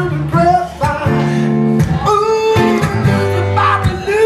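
A man singing a blues song live, accompanying himself on a strummed acoustic guitar, with chords struck repeatedly under long sung notes.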